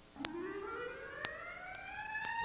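A siren-like pitched tone that starts about a quarter second in, glides upward and levels off into a steady note, over soft ticks about every half second.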